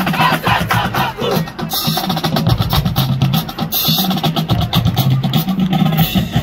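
Marching band playing: brass with sousaphones holding low notes, driven by steady snare and bass drum strokes.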